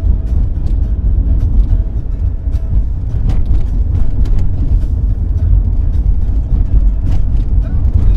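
Moving car heard from inside the cabin: a steady low road and engine rumble, with music playing underneath.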